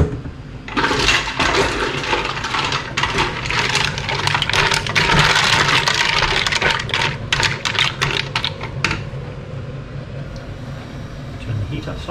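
Mussels in their shells tipped into a pan of hot, reducing cider cream sauce and stirred: shells clatter and click against the pan over a steady hiss. This lasts about eight seconds, then dies down to a quieter simmer.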